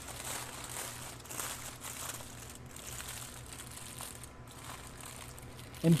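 Aluminum foil crinkling and crumpling as it is pressed and folded by hand around a sausage, faint and uneven.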